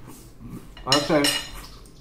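Chopsticks and a spoon clinking against ceramic bowls and plates during eating, with a short vocal sound from the eater about a second in.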